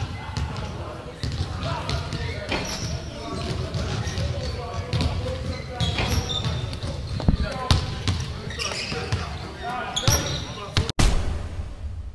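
Basketballs bouncing on a gym floor, irregular thuds, under indistinct voices of players talking. The sound cuts off suddenly about a second before the end.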